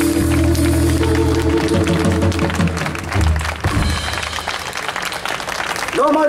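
A jazz quartet of upright bass, electric guitar, alto saxophone and drums holds its final chord and ends the tune with a last low bass note about three and a half seconds in, followed by audience applause.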